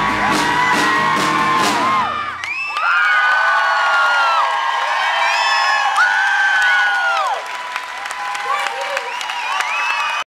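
Live folk-rock band holding its final chord on acoustic guitars and banjo, with steady drum strikes, until the music cuts off about two seconds in. Then the audience cheers, with loud whoops and shouts.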